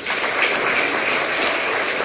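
Audience applauding, starting abruptly and then holding steady.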